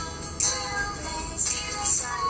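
Advertising jingle playing: a sung melody over music, with sharp percussion hits.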